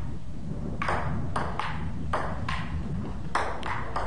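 Table tennis rally: the ping-pong ball clicking off bats and table, about seven sharp clicks in an uneven rhythm starting just under a second in, over a steady low rumble.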